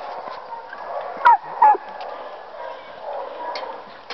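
A dog gives two short, high yips close together, each falling sharply in pitch, a little over a second in.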